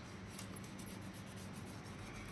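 Faint, fine scratching of a small brush scrubbing a soapy refrigerator glass shelf along its plastic frame edge.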